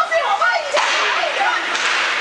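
Ice hockey play: a sharp crack about three quarters of a second in, over calling voices.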